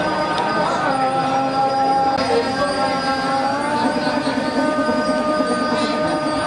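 Several voices singing long, drawn-out held notes that slide slowly from one pitch to the next, in the manner of Balinese devotional chant.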